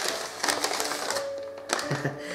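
Crinkly wrapping rustled and torn open by hand, in two spells of dense crackling in the first second, over soft background music.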